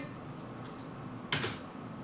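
A pause between sung lines: faint, steady room noise in a small room, with one short, sharp noise a little past halfway.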